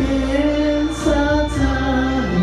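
A man singing a song into a handheld microphone over a recorded musical backing track, amplified through the hall's sound system, with long held notes that glide from one pitch to the next.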